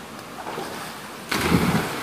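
A person jumping into a deep rock pool: a loud splash about a second and a half in as the body hits the water.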